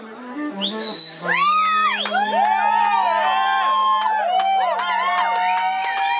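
Live soul band music. Low notes step down and settle on a long held note, under many overlapping sliding, wavering melodic lines.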